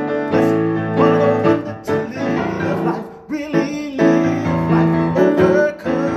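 Grand piano playing chords under a man's singing voice in a worship song, with a short break in the sound a little past the middle.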